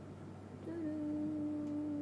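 A woman's closed-mouth hum, a thoughtful "mm" held on one steady low note for under two seconds, starting about half a second in.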